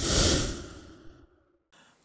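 A whoosh transition sound effect: a breathy rush of noise that is loudest at the start and fades away over about a second.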